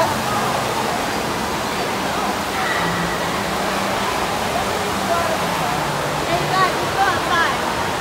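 Steady rushing and splashing of running water in an indoor water park hall, with faint voices of people around it.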